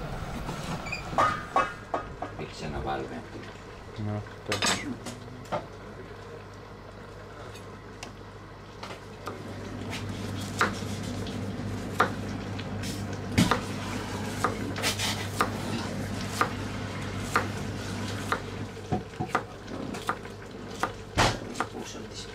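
A chef's knife chopping on a wooden cutting board, with irregular sharp knocks of the blade hitting the board as it dices raw fish and then onion and green pepper. A steady low hum runs underneath from a few seconds in.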